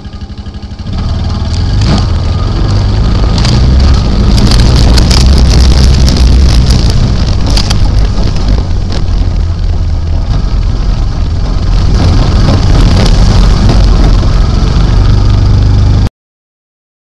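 ATV engine running hard at speed, getting louder about a second in and staying loud, with a few sharp knocks as it goes over rough ground.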